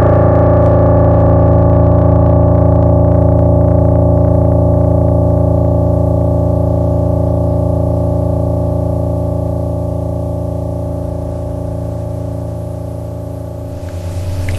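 Yamaha P-105 digital piano sounding a single low note below a guitar's range, held so it rings on and slowly fades away.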